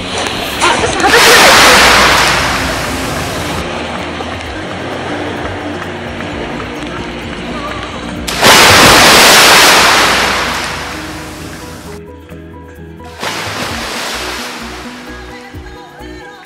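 Sea waves washing in over a rocky shore in three loud swells, each building and then fading, over steady background music.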